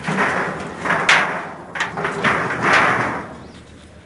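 A fish thrashing in a shallow basin of water, making a run of about five loud splashes over three seconds and then settling.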